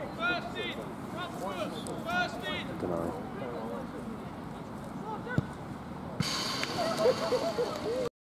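Voices calling out across an outdoor football pitch. About five seconds in comes a single sharp thud, a football being kicked for a set piece. A steady hiss starts suddenly about a second later and runs under the voices to the end.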